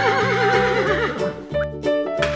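Horse whinnying: one quavering call that wavers in pitch and trails off about a second and a half in, over background music.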